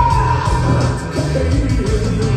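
Live pop-rock performance: a male singer sings into a microphone over loud music with bass and drums. A long high held note ends partway through, and the melody moves on.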